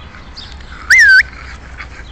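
A small dog gives one short, high-pitched yelp about a second in, its pitch rising, dipping and rising again.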